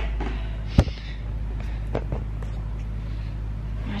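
A plastic pouch of Epsom salt being handled, with a few faint crinkles and one sharp knock about a second in, over a steady low hum.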